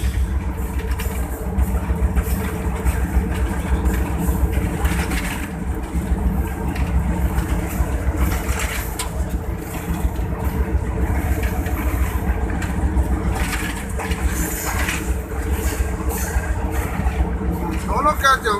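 Steady engine drone and low rumble inside the cab of a PHA-20 diesel-electric locomotive running at speed, with occasional faint knocks.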